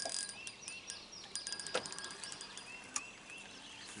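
A small bird chirping several times in short, arched notes. Beneath it are a quick run of faint ticks and two sharp light knocks near the middle.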